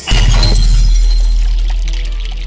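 Logo sting sound effect: a sudden loud hit with a deep bass boom that slowly fades, and a high shimmer on top.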